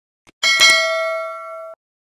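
Notification-bell sound effect for a subscribe button: a small click, then a bright ding of several ringing tones that rings for about a second and cuts off abruptly.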